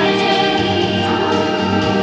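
A girl sings a Polish Christmas carol into a microphone over musical accompaniment, with held notes running through.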